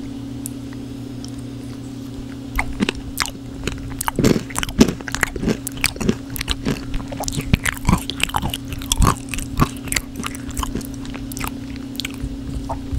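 Close-miked chewing of crunchy food: sharp, irregular crunches that start sparse and come thick and fast from about four seconds in, over a steady low hum.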